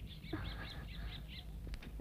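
A bird chirping faintly: a quick run of about seven short, high chirps in the first second and a half, over a low steady background hum.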